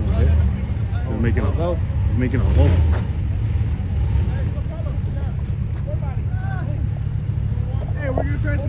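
Pickup truck engine running under load as the truck works its way up a steep dirt embankment: a steady low rumble that swells about half a second in and again around two and a half seconds. Faint voices of onlookers talk over it.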